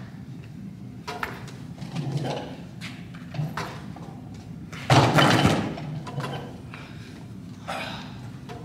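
Loaded barbell with round weight plates being lifted and lowered: a few light knocks, then one much louder, sudden clatter about five seconds in that fades within a second.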